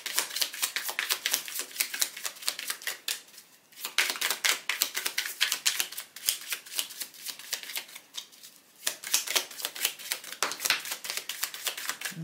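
A deck of oracle cards being shuffled by hand: fast runs of crisp card clicks, broken by two short pauses, about a third and two thirds of the way through.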